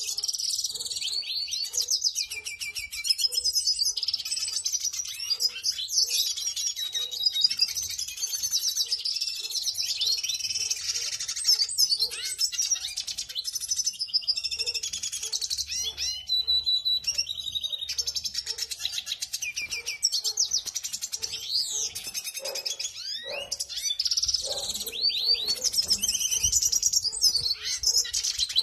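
Male red siskins singing: a fast, continuous, twittering song of high chirps and trills.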